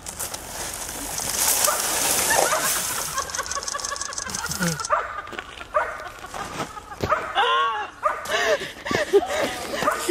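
A man sliding head-first down a snow-covered plastic slide and ploughing into deep snow: a rushing hiss lasting about four seconds that stops suddenly. People laughing and shrieking follow.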